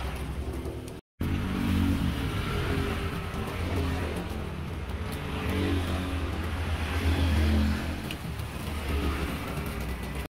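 A motor vehicle engine running, a steady low rumble with its pitch shifting a little, under a light hiss. The sound cuts out completely for a moment about a second in.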